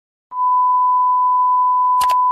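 Television colour-bars test tone: a single steady, pure beep held at one pitch, starting about a third of a second in.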